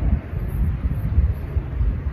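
Wind buffeting the microphone: an uneven low rumble that rises and falls.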